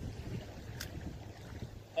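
Wind buffeting the microphone: an uneven low rumble that rises and falls, with one faint tick a little before the middle.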